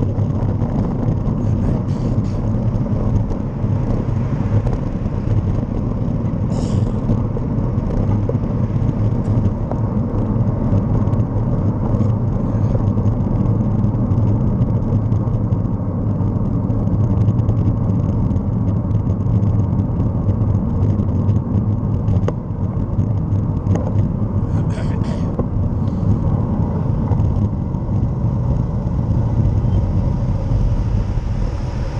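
Steady low rumble of wind and road noise on the microphone of a camera moving through city traffic, with two brief high-pitched squeaks, one about seven seconds in and one around twenty-five seconds.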